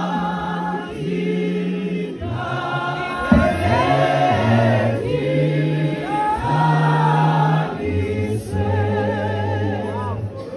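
A large congregation singing a hymn in parts without accompaniment, holding long chords over a deep bass line, with a man's voice leading through a microphone.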